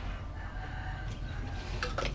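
A faint, drawn-out bird call, one long note lasting over a second, over a steady low rumble.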